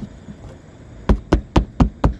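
A wooden hand block knocked down onto the seam of a torch-on cap sheet. One knock at the start, then four quick knocks about four a second near the end.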